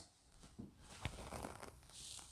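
Faint rustling and handling noises from a person moving close to the microphone, with a soft click about a second in.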